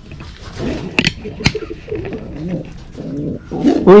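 Racing pigeons cooing, low and soft, with two sharp clicks about a second in.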